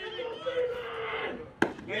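One sharp smack from the pitched baseball about one and a half seconds in, over faint spectator voices.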